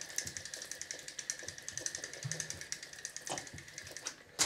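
Jaxon Saltuna 550 spinning sea reel being cranked to wind line onto the spool: a rapid, even ticking from the turning reel.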